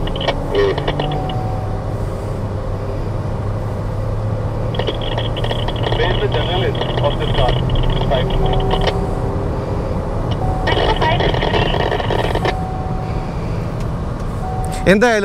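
MG Astor's engine and road noise heard from inside the cabin at track speed, a steady low drone.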